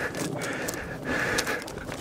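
A person breathing hard in short, noisy breaths in quick succession, winded and excited right after the shot.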